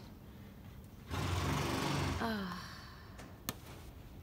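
A woman's long, breathy, exasperated groan ("ugh") about a second in, falling in pitch as it trails off. One sharp click follows near the end.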